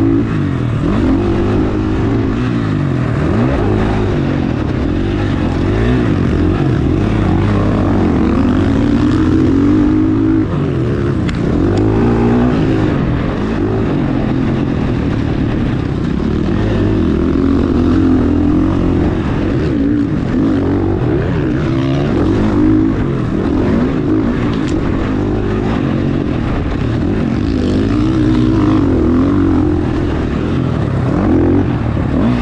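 Dirt bike engine being ridden hard on a motocross track, heard close up, its pitch rising and falling again and again as the throttle is opened and closed through the corners and jumps.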